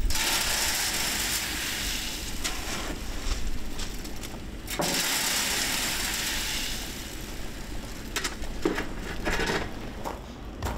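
Concrete pouring down a steel chute into foundation formwork: a rough, steady rushing and scraping that breaks off briefly a little before five seconds in, then resumes and thins into scattered knocks near the end.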